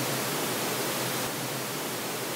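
THX Optimizer speaker-identification test signal: a steady hiss of pink noise with no deep bass, sent first to the center channel and then to the right channel. It dips slightly in level a little past a second in.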